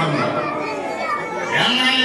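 Voices in a reverberant hall: children chattering and calling out, with a man's voice over a microphone. Near the end, a voice holds a steadier, drawn-out tone.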